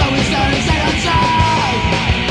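UK82-style punk rock recording playing: a loud full band with guitar and steady drum hits, and one long held note a little past the middle.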